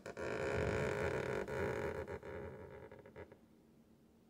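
Fingertip sliding down the surface of a painted pinstriping panel as a guide while the brush pulls a line, a steady rubbing noise that stops about three seconds in. This noise is usually a sign of a clean surface.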